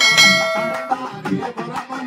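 Devotional bhajan music: dholu barrel drums beating a rhythm, with a bright bell-like ringing note struck at the start that holds for just under a second and then cuts off.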